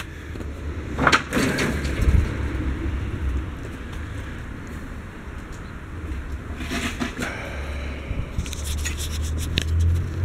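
Steady low outdoor rumble with scattered short rustles and knocks, a few near the start and a cluster near the end.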